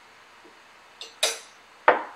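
A metal spoon handled against a ceramic salad bowl: a light click about a second in, a short scraping clink, then a sharper knock near the end, the loudest of the three.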